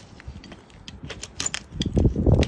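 Metal hoof tool scraping and clicking against a horse's hoof sole as packed dirt and bedding are cleared out, in a series of short, sharp scrapes and clicks.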